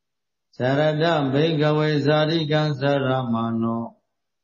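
A Buddhist monk's voice chanting in a sustained, even tone, starting about half a second in and stopping just before the end.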